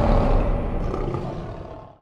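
Lion roar sound effect of a logo sting, trailing off and fading out by the end.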